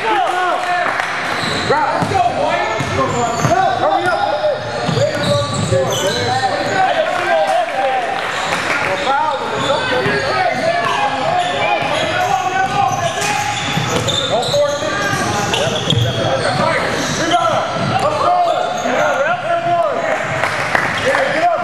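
A basketball game on a hardwood gym floor: the ball bouncing, many short squeaks of sneakers, and voices of players and spectators echoing in the large hall.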